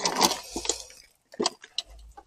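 Light clinks and clicks from hands handling the hoverboard's knee steering bar, a few separate ticks over a couple of seconds.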